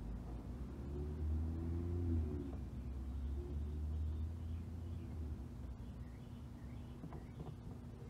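Quiet outdoor background: a low steady rumble, like a distant engine, that fades out about five seconds in, with faint bird chirps and a few soft clicks near the end.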